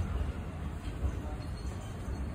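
JR Central 373 series electric multiple unit rolling past the platform as it pulls away, a steady low rumble of wheels and bogies on the rails.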